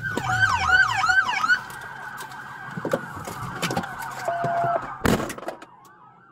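Police car siren yelping in quick rising-and-falling sweeps, then settling into one held tone that slowly falls as it winds down. A short low beep sounds a little after four seconds, and a sharp knock about five seconds in.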